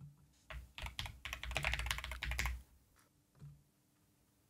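Typing on a computer keyboard: a quick run of keystrokes lasting about two seconds, then quiet apart from one faint sound near the end.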